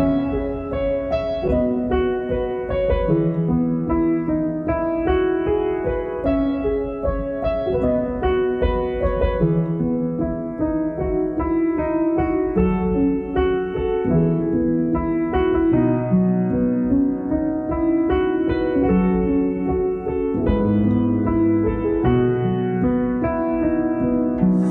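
Background piano music: a steady run of single notes over lower held notes.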